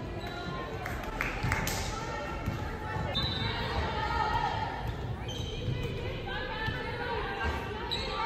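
Volleyball play in a large gymnasium: the ball is struck and bounces several times, with sharp impacts echoing in the hall over a steady din of players' and spectators' voices.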